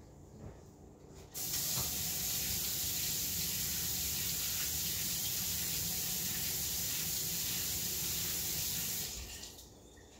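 Kitchen tap turned on about a second in and running steadily as an egg is rinsed under it, then shut off near the end.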